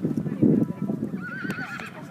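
A horse whinnying: a short, wavering call about a second in, over loud low rustling noise on the microphone that peaks about half a second in.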